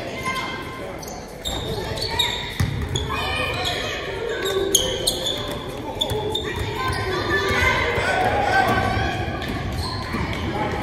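Basketball game on a wooden gym floor: the ball bouncing, short high squeaks of sneakers on the hardwood, and background voices of players and spectators, all echoing in the hall.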